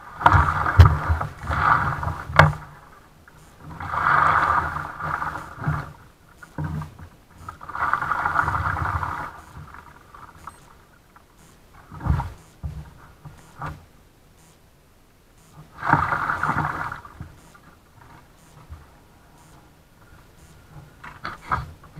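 Plastic kayak being worked through fallen branches: paddle strokes in the water and the hull scraping and knocking against wood, in bursts of a second or two with sharp knocks among them.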